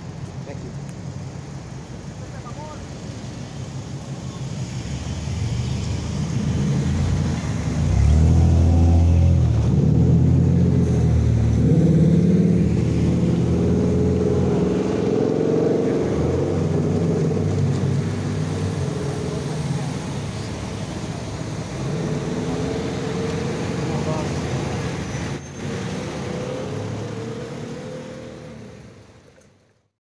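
Cars driving past through a city intersection. Their engine sound builds to its loudest about eight seconds in, stays for several seconds, then falls off and fades out at the end.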